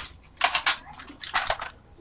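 Handling noise: a few short clicks and knocks, two about half a second in and two more around a second and a half.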